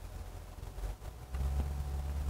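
Soft puffs and draws on a cigar over a steady low rumble, with a deeper low hum coming in about one and a half seconds in.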